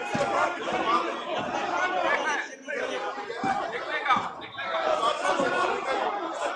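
Many people talking at once in a large hall: overlapping chatter of a crowd of legislators, with a brief lull about two and a half seconds in.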